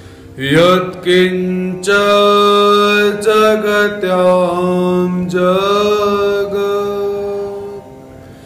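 A man's solo voice chanting a devotional invocation in long, held notes that glide slowly between pitches. It starts about half a second in, breaks off briefly a few times, and stops just before the end.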